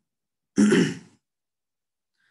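A man coughs once, clearing his throat: a single short, harsh burst about half a second in.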